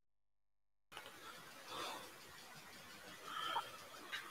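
Dead silence, then about a second in an open microphone cuts in with faint hiss and a couple of faint, indistinct murmurs.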